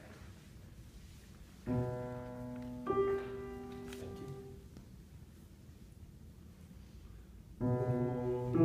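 Grand piano rolling the starting pitches: a low note about two seconds in, a higher note added about a second later, both ringing out and fading. Near the end the notes are struck again.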